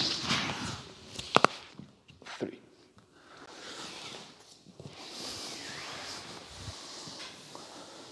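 A person rolling over the shoulder on a wooden floor: a few sharp knocks of body, hands and feet against the boards in the first couple of seconds, a close double knock among them, followed by soft rustling as the body and clothing shift over the floor.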